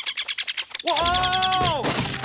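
Cartoon camera shutter firing in a rapid burst of clicks, about a dozen a second, for roughly the first second. It is followed by a held pitched sound of several tones that drops in pitch near the end.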